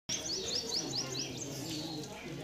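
A bird calling: a quick run of about seven short, high chirps in a little over a second, then only faint outdoor background.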